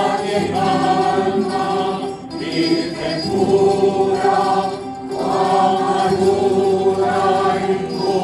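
A choir singing gozos, a Spanish devotional hymn, with a plucked-string ensemble accompanying. The sung phrases break briefly about two and five seconds in.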